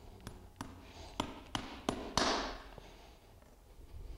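Farrier's driving hammer tapping on a steel horseshoe nail as the shoe is nailed onto a hoof: about six light taps over two seconds, getting louder, the last the loudest with a short hissing tail.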